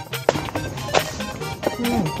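Background music with a light, even rhythm, with a few sharp knocks over it, the clearest about a third of a second in and about a second in.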